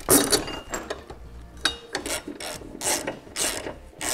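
Hand ratchet wrench clicking in repeated strokes, about two a second, as it turns a truck body-mount bolt.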